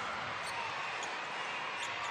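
Steady arena crowd noise, with a basketball being dribbled on the hardwood court.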